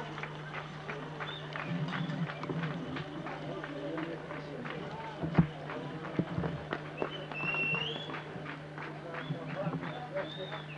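Indistinct chatter of several voices, with scattered knocks and clicks over a steady low hum. A brief high-pitched call rises and falls a little after halfway.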